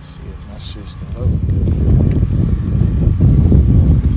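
Insects calling steadily in a high, pulsing trill, over a loud low rumble that swells in about a second in.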